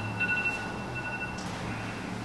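A steady high electronic tone, two pitches held together, that cuts off about a second and a half in.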